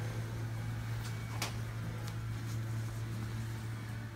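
A steady low hum of a running appliance fills the room, with one faint click about a second and a half in.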